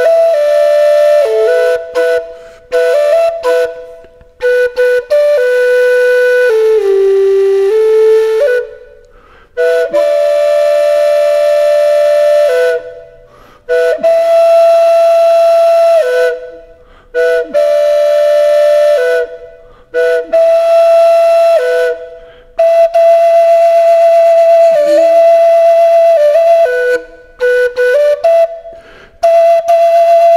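A solo flute playing a slow melody of long held notes, with short breaks between phrases.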